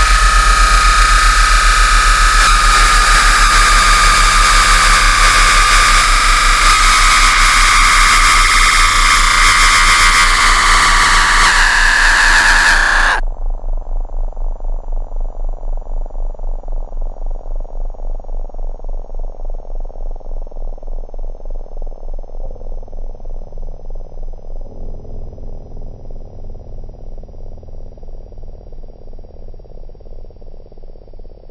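Harsh noise passage from a homemade metal/noise album: a loud, dense wall of noise with a high ringing tone in it, which cuts off abruptly about 13 seconds in. A muffled, evenly pulsing low sound follows and slowly fades.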